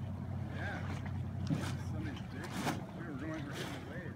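Outdoor ambience: a low steady hum that fades about halfway through, with faint voices and wind on the microphone.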